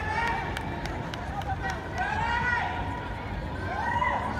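Trackside shouts of encouragement to runners during a 1500 m race: several long, drawn-out calls that rise and fall in pitch, over open-air background noise.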